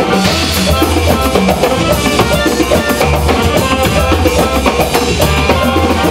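Live band music: a drum kit and hand drums play a busy, steady beat over a sustained low bass line, with shifting melodic notes above.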